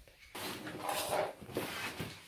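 Stiff cardboard rustling and scraping as a large printed cardboard floor sheet is slid out of its toy box, starting about a third of a second in.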